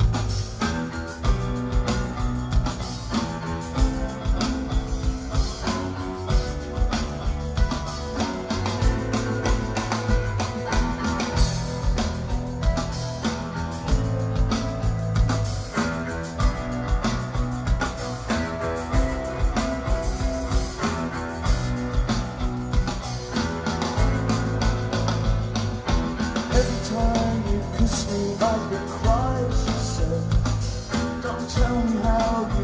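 Rock band playing live, an instrumental passage with guitars and drums keeping a steady beat.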